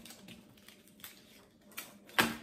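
Faint rustling and a few light clicks from a paper coffee filter and plastic straws being handled and adjusted.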